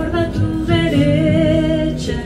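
A song sung to acoustic guitar and ukulele, the voice holding one long note through the second half.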